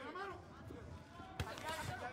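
Boxing gloves thudding on a body, with one sharp punch impact about one and a half seconds in, over faint shouting voices from the arena.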